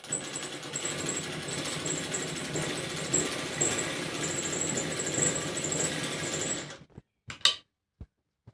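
Sewing machine running steadily as it stitches through fabric, stopping near the end, followed by a short sharp click.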